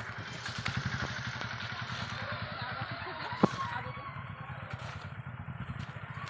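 A small engine running steadily with a fast, even low throb, and a single sharp click a little past halfway.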